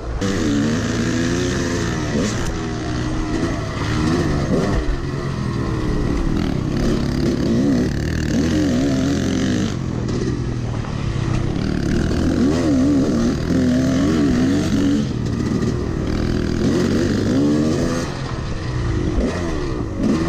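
Yamaha dirt bike engine heard up close from the rider's position, its pitch rising and falling over and over as the throttle opens and closes while riding a trail.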